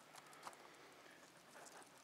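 Near silence, with faint soft crackles and ticks of compost crumbling and roots parting as a Venus flytrap clump is pulled apart by hand.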